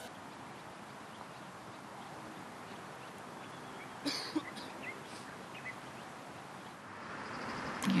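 Quiet outdoor golf-course ambience, a steady faint hiss, with a brief bird call just after four seconds in and a fainter one a little later.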